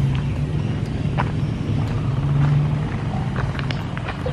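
A steady low rumble that swells slightly in the middle, with a few faint clicks.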